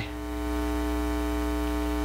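Steady electrical mains hum with a buzzy edge, unchanging in pitch and level.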